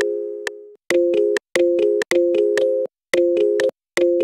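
Serum software synth playing short, plucky chords of two or three notes in a repeating rhythm, about two a second, each chord cutting off abruptly into silence.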